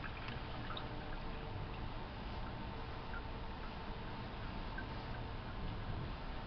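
Distilled water squeezed from a plastic wash bottle trickling and dripping off a glass microscope slide into a steel sink, gently rinsing off the Giemsa stain, with a few faint drips over a steady background hum.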